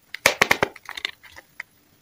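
Crinkling of a small candy packet's wrapper handled between fingers: a quick run of sharp crackles in the first half second, a few more around one second in, and a last single click.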